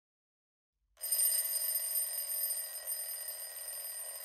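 Phone alarm ringing steadily, a high-pitched electronic ring that starts suddenly about a second in.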